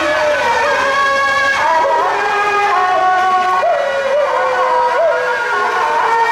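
Suona, the Chinese double-reed horn, playing a loud melody of held notes with frequent sliding bends, as in a Taiwanese temple-procession band.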